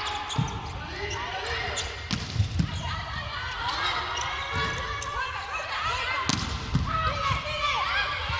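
Indoor volleyball rally: the ball is struck several times, with sharp hits about two and a half seconds in and the loudest just after six seconds, over players' calls and shoes squeaking on the court.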